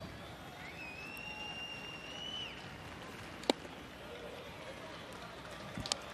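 Ballpark crowd murmur. A high whistle is held for about two seconds early on. About three and a half seconds in there is a single sharp pop as the pitch smacks into the catcher's mitt for a ball.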